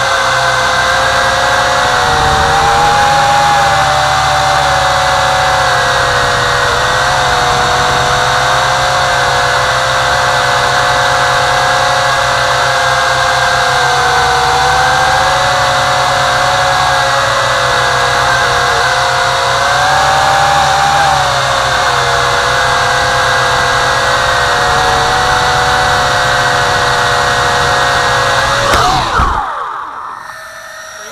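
WLtoys V262 quadcopter's motors and propellers whining steadily in flight, the pitch wavering slightly with the throttle. Just before the end the whine glides down and dies away as the quadcopter lands.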